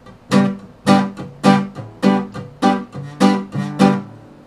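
Mahogany Harley Benton acoustic guitar strummed in a steady rhythm: about seven even chord strums, a little under two a second, each left to ring.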